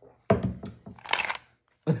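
Hollow plastic shape-sorter ball knocking against a wooden tabletop and being handled, with a sharp knock about a third of a second in followed by a second of scuffing and rattling. Near the end a person clears their throat.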